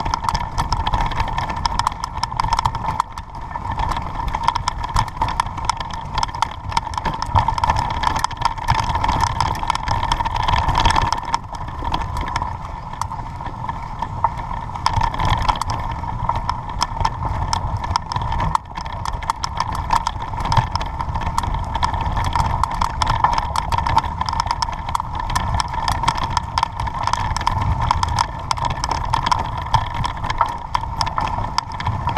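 A bicycle ridden over a bumpy sandy forest dirt track: steady rumble with constant rattling and small knocks from the bike and its mounted camera, under a steady high hum.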